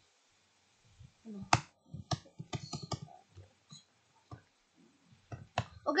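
Computer keyboard keys clicking in an irregular run of separate taps as lines of code are deleted and edited. The clicking starts about a second in, and one stroke about a second and a half in is louder than the rest.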